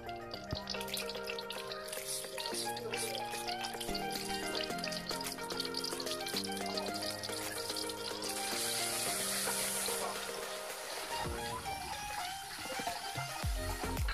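Background music with slow, held notes, and a faint hiss of a spice paste frying in oil in a wok underneath, which swells briefly about two-thirds of the way through.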